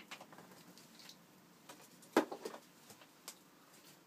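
Faint, irregular clicking of a digital piano's keys being played with the instrument heard only in headphones, so no notes come through. A louder knock comes a little over two seconds in.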